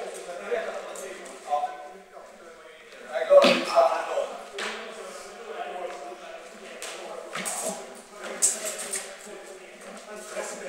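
Indistinct voices carrying in a large hall, broken by several sharp clicks and knocks from fencing: blades meeting and feet striking a wooden floor, the loudest a little past three seconds in.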